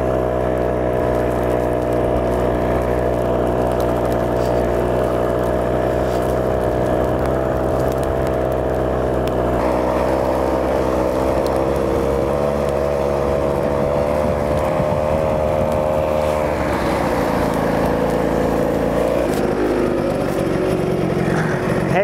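The 134cc two-stroke engine of a tracked ski-propulsion unit running under load as it pushes a skier through deep, heavy snow. Its note holds steady, then turns rougher and lower about three quarters of the way through.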